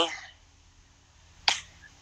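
A single short, sharp click about one and a half seconds in, between spoken phrases.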